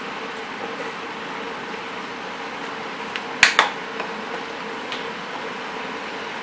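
Steady hiss of chopped vegetables and tomatoes frying in an Instant Pot on sauté, with a faint steady hum under it. A single short, sharp noise comes about three and a half seconds in.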